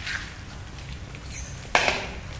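Performers moving barefoot on a wooden stage floor, with brief animal-like vocal noises and one loud, sharp sound near the end.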